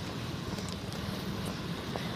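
Steady low rumble of wind on the phone microphone while walking on sand, with faint soft footfalls.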